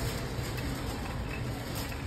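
Shopping cart wheels rolling over a concrete floor, a steady low rolling noise.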